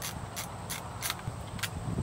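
A disposable film camera being handled and wound on for the next shot: about five light clicks spaced a third to half a second apart, over a low outdoor rumble.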